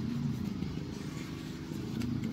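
Steady low background rumble of distant motor traffic.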